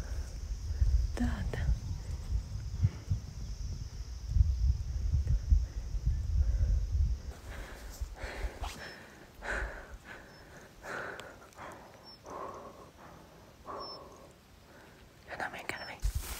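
Strong wind buffeting the phone's microphone in gusts, a deep rumble. About seven seconds in, the wind drops away and only faint, short whispery sounds remain.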